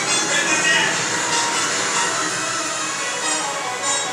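Film soundtrack playing through a theatre's sound system: a rousing musical score with voices mixed in, steady and fairly loud throughout.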